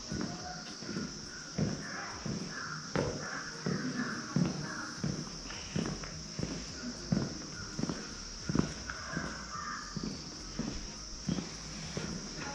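Footsteps of a person walking at a steady pace on a tiled floor, about three steps every two seconds, over a steady high hiss.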